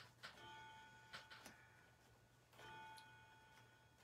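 Near silence: room tone, with two faint steady tones of under a second each and a few faint clicks.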